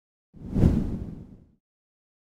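One whoosh sound effect that swells up about a third of a second in and dies away over about a second, heaviest in the low end.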